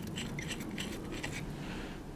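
A few faint metallic clicks in the first second as a steel bolt is wound by hand into a Time-Sert threaded insert in an outboard's block, then only low room noise once it is seated.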